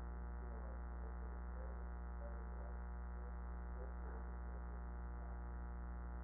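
Steady electrical mains hum: a low, unchanging drone.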